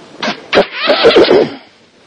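A loud, wordless burst of a person's voice close to the microphone: a short sound about a quarter second in, then a louder wavering one lasting about a second.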